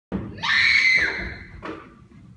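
A high-pitched scream lasting about half a second that drops in pitch as it breaks off, followed by a shorter second cry.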